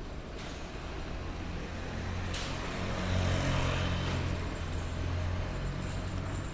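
A motor vehicle passing close by: a low engine hum and road noise swell about two seconds in, peak around the middle and ease off, over a steady urban background.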